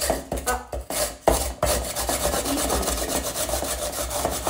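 A whole onion being grated by hand over the bamboo teeth of an oni-oroshi grater, a rasping scrape. A few separate strokes open it, and from about a second in it runs into quick, continuous back-and-forth strokes.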